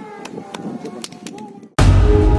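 Low background sound with a bird cooing and a few sharp clicks, then loud channel theme music starts suddenly near the end.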